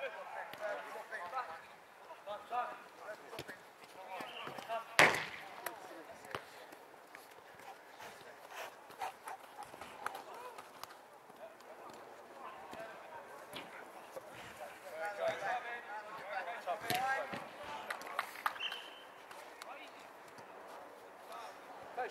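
Players' distant shouts and calls across a small football pitch, broken by sharp impacts of the football, the loudest about five seconds in and another near the seventeen-second mark.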